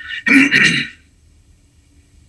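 A man clears his throat once, briefly.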